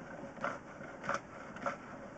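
Drain inspection camera and its push rod being worked through a pipe, giving a few short scrapes over a low hiss.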